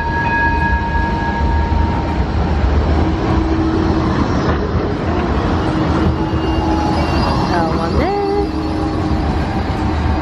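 Blackpool promenade tram running past with a steady low rumble and faint held whining tones.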